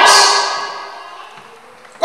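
A man's loud voice through a microphone breaks off at the end of a phrase and trails away, fading steadily over about a second and a half to near quiet. Loud voice returns abruptly at the very end.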